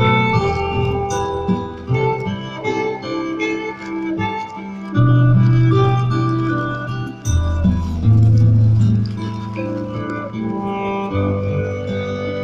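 Live saxophone playing a slow melody over a backing band's long held bass notes, amplified through outdoor stage speakers.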